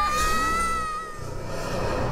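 A high-pitched cartoon squeak that dips slightly, then holds for about a second before stopping, over a low background music bed.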